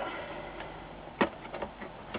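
Small plastic wire-harness plug being worked loose from a circuit board: one sharp click about a second in, then a few faint ticks.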